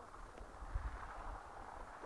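Quiet outdoor background noise with faint low rumbling.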